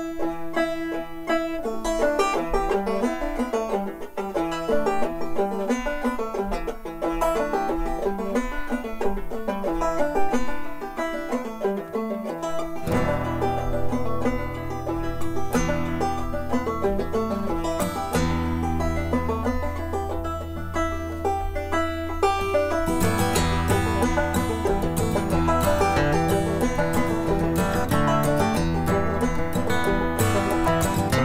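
Old-time instrumental tune on banjo and acoustic guitar. The banjo plays the melody alone at first, and the guitar comes in with bass notes about 13 seconds in. The playing grows fuller near the end.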